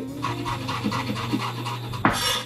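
Chef's knife rapidly mincing garlic on a wooden cutting board: an even run of quick taps, about eight a second.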